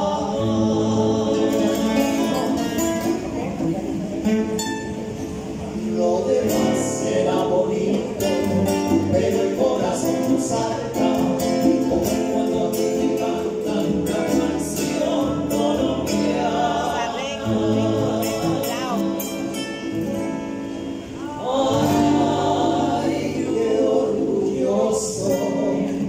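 Live trio music: two acoustic guitars and congas backing two male voices singing together. The music eases off briefly a few seconds before the end, then comes back in fuller.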